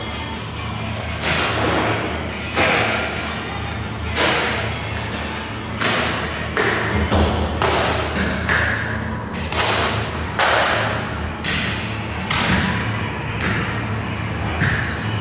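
Thin pastry dough being slapped and flung out across an oiled work counter by hand: irregular slapping thuds, roughly one a second, over a steady low hum.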